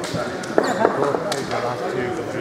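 Indistinct background chatter of several voices in an ice rink hall, with a few sharp knocks.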